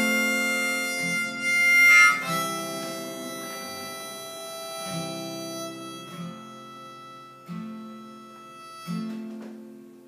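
Harmonica held in a neck rack playing sustained notes over acoustic guitar chords strummed about every second and a half. The harmonica is loudest in the first few seconds, peaking around two seconds in, then fades, leaving mostly the ringing guitar chords.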